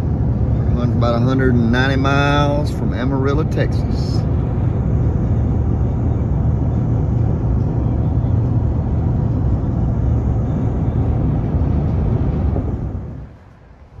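Steady low road and engine rumble inside a truck cab cruising at highway speed. It fades out near the end.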